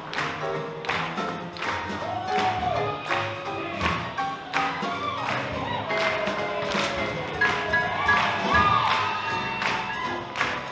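Live swing band (horns, upright bass, piano and drums) playing up-tempo swing music for Lindy Hop dancing, with a steady beat of about two strokes a second.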